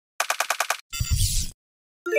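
Intro sound effect: a quick run of six sharp clicks, then a short noisy burst with a deep rumble and a high hiss lasting about half a second.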